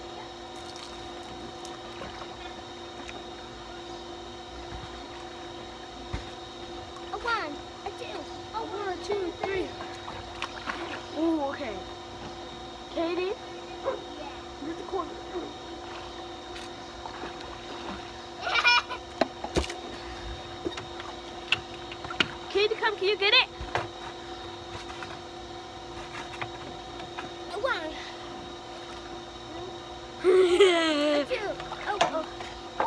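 Girls' voices coming and going from about seven seconds in, with water splashing in a swimming pool, over a steady hum.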